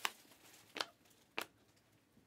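Panini Optic basketball cards being flipped through one at a time, each card slid off the stack with a short, sharp flick: three in about a second and a half.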